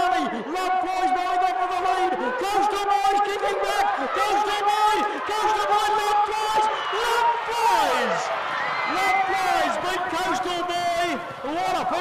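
Male race caller's continuous commentary calling a horse-race finish.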